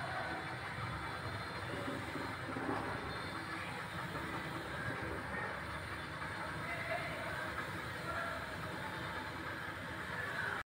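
Steady background noise with no distinct event.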